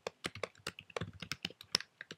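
Typing on a computer keyboard: a quick, uneven run of keystrokes, coming faster and closer together in the second second.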